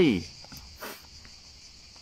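Steady high-pitched chorus of insects, with a man's voice trailing off at the start and a brief hiss about a second in.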